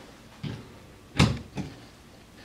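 A few handling knocks: a soft thump about half a second in, then a sharp, louder knock a little after a second, followed by a lighter tap.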